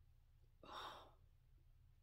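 A person gasps once, a short sharp breath about half a second in, in surprise. The gasp sits over near silence and a faint low hum.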